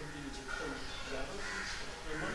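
Faint murmur of voices in a room full of seated people, with a few harsher calls mixed in.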